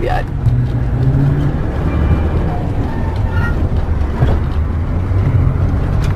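Large motorhome driving through town, heard from inside the cab: a steady low engine and road rumble.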